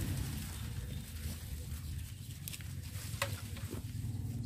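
Rustling and faint snaps of corn plants as people push through a cornfield on foot, over a low, uneven rumble on the microphone.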